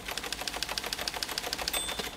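Teleprinter clattering out a message: a rapid, even run of printing strikes, about a dozen a second.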